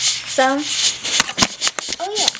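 Rustling and handling noise with a brief falling vocal sound about half a second in, then several sharp clicks in the second half.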